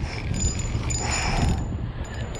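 Spinning reel being cranked to reel in a hooked fish, with a thin, steady high whine that comes in near the start and stops about halfway through, over a steady low rumble.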